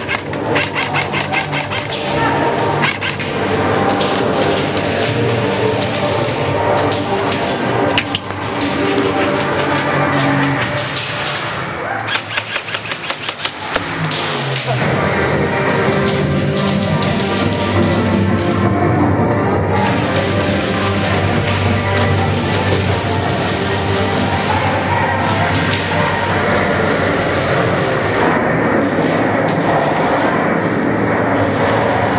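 Music with a steady beat; a little before halfway there is a short stretch of rapid, evenly spaced ticks.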